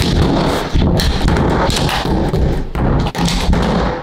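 A run of loud, heavy bangs and thuds from a door being shoved and slammed against its frame, with a deep rumble between the hits.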